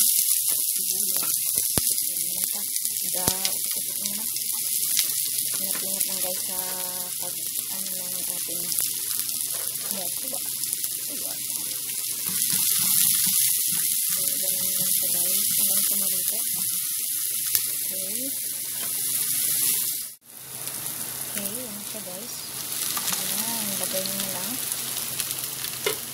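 Chopped onion sizzling steadily in hot oil in a frying pan, stirred now and then with a spatula. About 20 seconds in the sizzle cuts out briefly, then carries on with fried squid pieces added to the onion.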